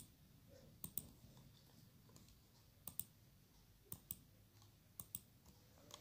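Quiet, sharp clicks of a computer mouse button, mostly in close pairs, four pairs over a few seconds.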